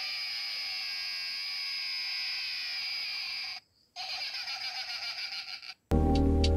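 Annoying Orange plush toy's sound box playing its recorded high-pitched voice clip through a small speaker, in two stretches with a short break just past the halfway point.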